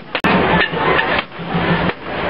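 Sticks striking a hanging painted wooden barrel, over the chatter of a crowd.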